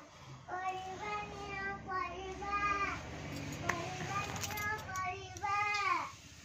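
A young child singing a song unaccompanied, in short phrases of held, gliding notes with brief gaps between them. A few sharp knocks sound about midway.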